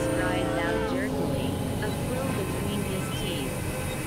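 Experimental electronic mix: steady synthesizer drones, several held tones at once, with a voice from a spoken-word recording mixed in under them.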